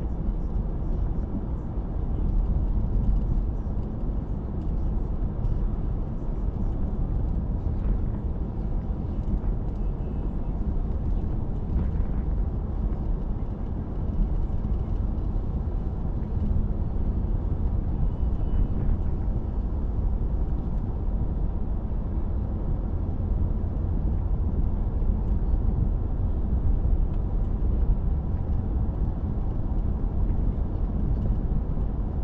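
Steady low rumble of a car's road and engine noise, heard from inside the cabin while driving at a cruising speed.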